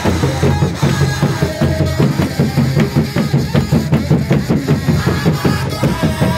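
Large stick-beaten frame drums playing a steady, quick beat, with a congregation singing along: Akurinu kigooco worship music.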